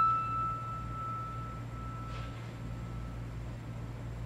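A single high treble note on a Mason & Hamlin AA grand piano, struck lightly just before, ringing on and slowly dying away over about three seconds: a long sustain. A steady low hum runs underneath.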